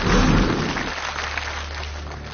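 Studio audience applause and crowd noise, with a deep low boom in the first second.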